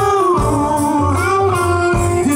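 Live blues-rock band playing: electric guitar and bass guitar, with a man singing. Gliding notes sit over a steady bass line.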